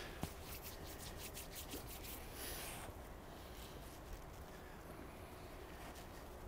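Faint steps of a horse walking on arena sand, a quick run of soft ticks in the first couple of seconds, over a low, steady background hum.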